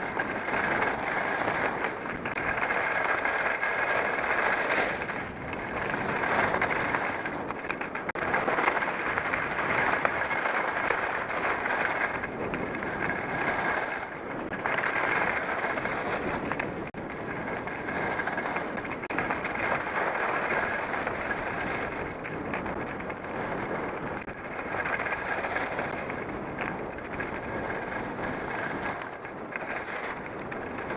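Edges scraping and sliding over firm groomed snow through a run of turns, the hiss swelling and fading every second or two.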